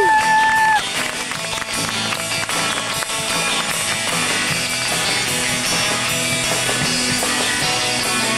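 A live band plays a surf rock instrumental, guitar over a steady beat. A high note is bent and then held for just under a second at the start.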